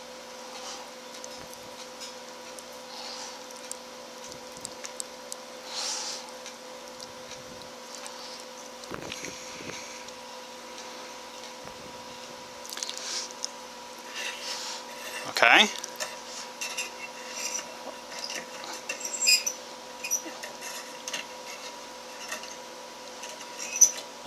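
Quiet workbench handling: small clicks, taps and rustles as lamp wires are handled and soldered with an electric soldering iron, over a faint steady hum.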